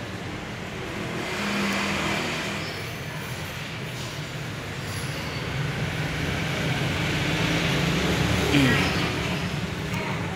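Road traffic with vehicle engines running, growing louder in the second half, peaking near the end.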